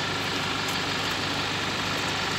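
SUV engine idling steadily.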